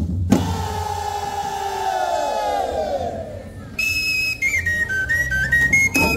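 Voices give a long shout that slides down in pitch. About four seconds in, a high flute or whistle plays a short melody in clear steps over the dance music.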